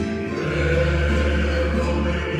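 Male mariachi voices singing together in harmony, holding long notes over a steady low bass note.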